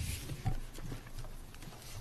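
A few soft, scattered knocks and a brief rustle at the start: papers and a pen being handled close to a desk microphone.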